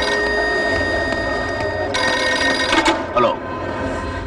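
A telephone ringing: one steady, high ring lasting about two seconds, then stopping, over continuous background noise.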